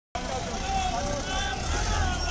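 Raised voices calling out in a street crowd over a steady low rumble.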